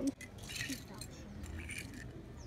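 Faint, light clinks of small hard objects, once about half a second in and again near the end, over soft room noise.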